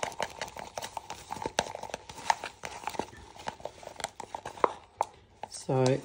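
A mixing stick stirring and scraping thick colour paste around a clear plastic cup, with irregular small ticks and scrapes against the plastic.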